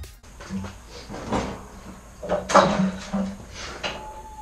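Plastic knocks and clunks from hands working on pool pump and filter equipment, a handful of separate sharp knocks with the loudest about two and a half seconds in.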